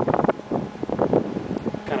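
Men's conversational speech with wind buffeting the microphone, over a steady low hum.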